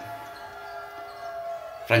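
Faint sounds of a basketball game on a wooden hall floor, with the ball bouncing, over a steady background that carries a few thin held tones.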